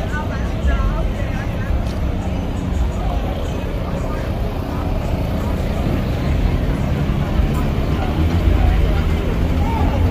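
Several people talking at once over a loud, steady low rumble, the general noise of an outdoor car meet.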